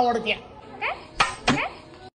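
Two sharp clicks about a third of a second apart, with short rising glides around them, after a voice trails off.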